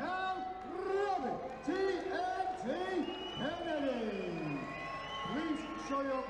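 A ring announcer's voice over the arena PA, declaring the fight result in drawn-out words, with one long falling syllable about three and a half seconds in.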